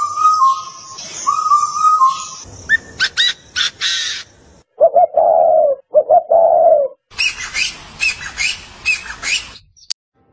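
A string of different bird calls cut one after another: repeated notes, then quick sweeping calls, then a spotted dove's low cooing about five seconds in, then a run of rising and falling whistled calls near the end.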